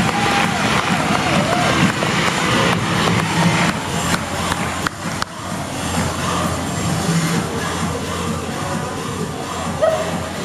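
Music playing over the cheering and applause of an arena crowd.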